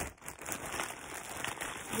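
Clear plastic zip-top bag crinkling and rustling as it is opened and rummaged by hand, loudest right at the start, then a steady crackle.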